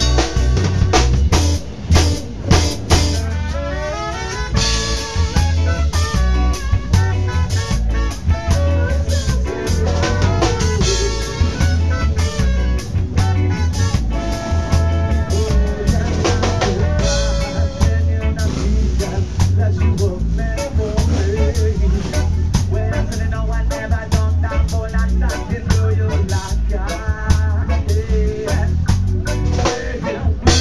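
A traditional ska band playing live, with a trumpet carrying the melody over a drum kit's steady beat of snare rimshots and bass drum.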